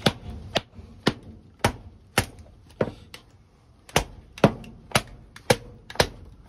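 A stainless Mora knife being batoned through a block of wood: a red-handled hammer strikes its spine in sharp knocks, roughly two a second, with a brief pause in the middle.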